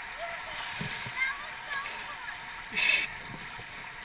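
Whitewater rapids rushing steadily around the kayaks, with one sharp splash of water about three seconds in.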